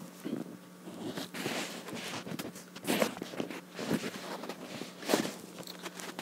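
Handling noise from a phone held and moved in the hand: rustling and shuffling with scattered knocks, the two loudest about three and five seconds in, over a steady low hum.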